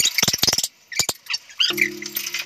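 Background music with a dog yapping in short, high yips, and a held chord coming in near the end.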